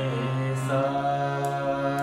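Harmonium playing a slow melody in raag Tilak Kamod, held reed notes sounding together, moving to new notes about two-thirds of a second in.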